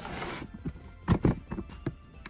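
A short laugh, then a few sharp plastic knocks and clicks from a hand handling a clear plastic storage-tub reptile enclosure: two loud ones close together about a second in and a softer one near the end.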